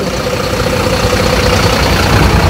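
Mercedes-Benz Atego concrete mixer truck's diesel engine running at idle close by, a steady low rumble with a steady hum, growing a little louder.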